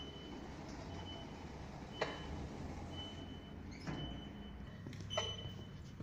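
High-pitched electronic beeping, repeating about once a second with beeps of uneven length, over a low steady hum. Its source is unknown. A few light knocks fall among the beeps.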